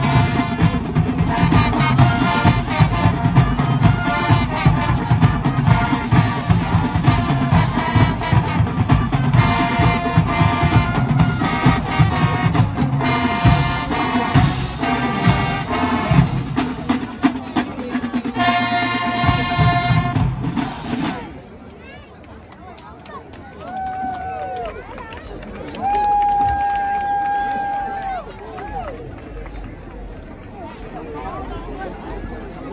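Marching band playing brass over a steady drum beat, ending on a long held chord about twenty seconds in. After that, crowd chatter with two long held notes.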